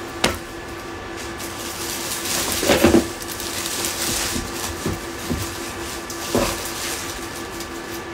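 Rustling and handling of clothes and packed items in an open suitcase, with a few short knocks and crinkles, the loudest about three seconds in, over a faint steady hum.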